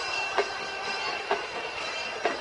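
Stadium crowd noise at a football game: a steady wash of sound with a thin sustained high tone, broken by two sharp knocks.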